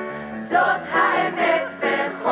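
A musical-theatre ensemble singing, several voices together over low accompanying notes; a held note gives way to a new sung phrase about half a second in.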